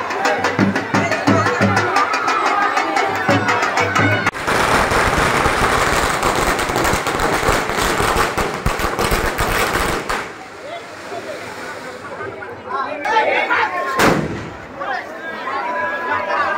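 Firecrackers going off in a dense, rapid crackle that starts about four seconds in and cuts off abruptly about six seconds later. Before it a drum beats steadily under crowd voices, and a single sharp bang sounds near the end.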